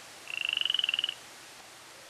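A frog calling: one short, high-pitched trill of rapid pulses, about twenty a second, lasting just under a second.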